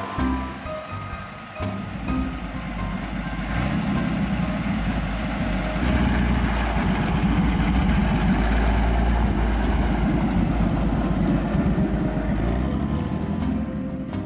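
Vintage car's engine running, a steady low rumble that comes in about two seconds in, is loudest in the middle and fades near the end as music returns.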